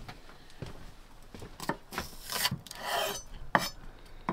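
Kitchen knife chopping greens on a wooden chopping board: irregular knocks of the blade on the wood, with a couple of longer scraping sounds in the middle.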